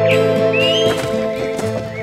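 Background music for an animated story, with held sustained chords. About half a second in, a brief high gliding sound effect rises and wavers over the music.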